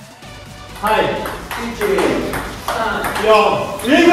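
A short glitchy electronic transition sound effect, then excited men's voices exclaiming loudly over background music.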